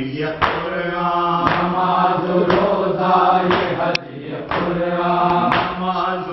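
Male reciter chanting a noha, a Muharram lament, with a group of mourners' voices joining in, over rhythmic matam chest-beating about once a second. The chant pauses briefly about four seconds in.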